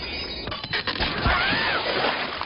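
Cartoon sound effects over background music: a quick run of knocks and clatters, then a short whistle-like tone that rises and falls.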